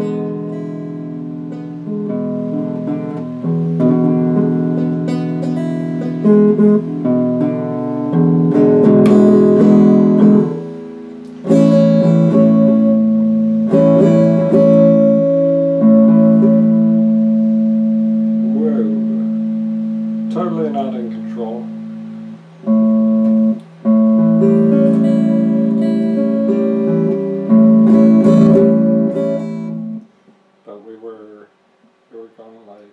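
Electric guitar strummed and plucked with the fingers, with chords ringing on and changing as a new fingering is practised. The playing breaks off briefly a little before eleven seconds in and again twice near twenty-three seconds.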